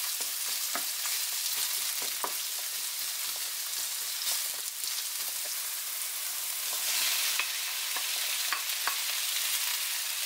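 Sliced onions sizzling in hot oil in a nonstick frying pan, a steady hiss with scattered small crackles and pops, stirred with a wooden spoon. The sizzle gets a little louder about seven seconds in.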